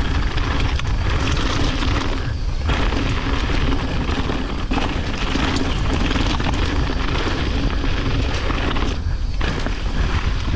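Mountain bike descending rocky trail: steady wind rumble on the bike-mounted camera's microphone, mixed with the noise of knobby tyres rolling over rocks and leaves. The noise eases briefly twice, about two and a half seconds in and near the end.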